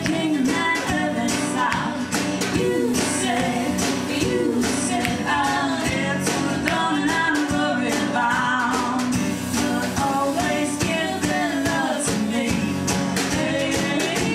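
Live country band song: a woman singing over a strummed acoustic guitar, with drums keeping a steady beat.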